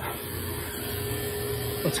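Fieldpiece VP67 two-stage vacuum pump running with a steady hum, pulling a deep vacuum of about 500 microns on a heat pump's refrigerant line set.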